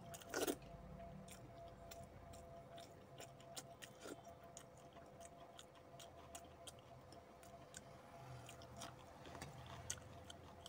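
Faint eating sounds: chewing and many small clicks of fingers working rice and picking food from steel bowls, with one louder burst about half a second in. A faint steady hum lies underneath.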